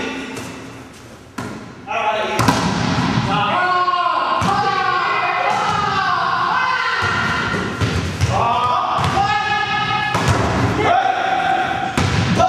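Several heavy thuds of bodies landing on judo mats, the first about two seconds in, amid people talking.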